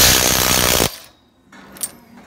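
Makita DTW285Z 18V cordless impact wrench hammering on a nut through a socket for just under a second, then stopping suddenly. A faint click follows near the end.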